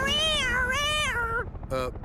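A cartoon robot character's voice imitating a police siren: a wavering wail that rises and falls in two swells and stops about a second and a half in, followed by a short laugh near the end.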